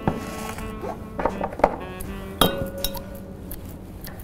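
Glassware clinking: a few light strikes against a glass beaker, the loudest about two and a half seconds in, ringing on for nearly a second. Background music underneath.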